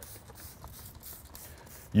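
Faint spritzing and trigger clicks of a hand-held spray bottle spraying a radiator, in short irregular squirts.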